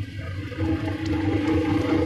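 Sesame seed washing and peeling machine running: its motor hums steadily while the stirring arms churn wet sesame seeds in the stainless steel tank, the hum growing louder about half a second in.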